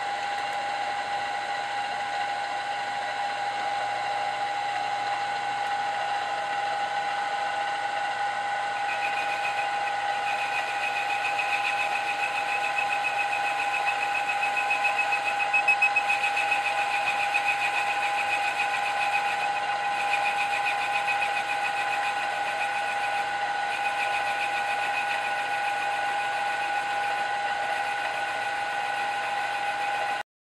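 Milling machine spindle running with a steady whine as a boring bar feeds down into a brass steam engine cylinder. A higher-pitched note joins about nine seconds in as the bar cuts the brass.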